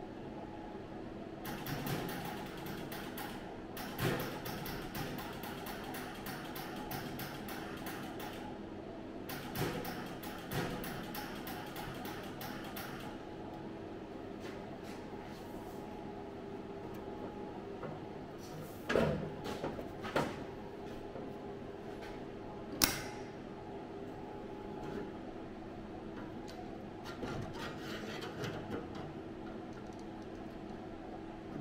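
Welder crackling in three bursts of a few seconds each in the first half, tack-welding a clamped repair panel in place. A few sharp knocks follow later on.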